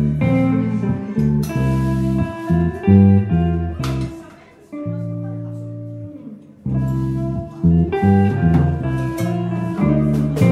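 Live instrumental band music led by guitar, with a blues feel. About four seconds in the playing drops away to a held low chord, and the full band comes back in at about six and a half seconds.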